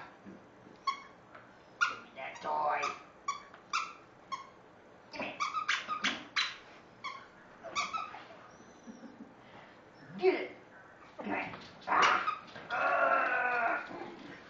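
A small senior terrier barking at a plush toy in an irregular string of short, sharp barks, at times several a second: play barking to get someone to pick up the toy and play. Near the end comes a longer drawn-out vocal sound, about a second long, as the toy is tugged.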